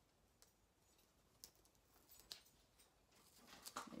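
Near silence, broken by a few faint, scattered ticks and rustles of small pieces of infusible ink transfer sheet being handled and pressed into place by fingers.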